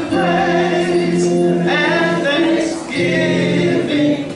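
Gospel praise singing: a woman's lead voice into a microphone with other voices joining, in long held notes broken by two short breaks.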